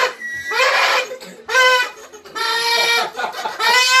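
Party horns blown in a run of about four blasts, each one steady tone held on one pitch. The first starts with a short rise, and the longest lasts over a second.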